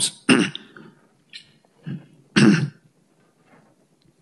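A man coughing and clearing his throat several times in short, separate bursts. The loudest come just after the start and about two and a half seconds in.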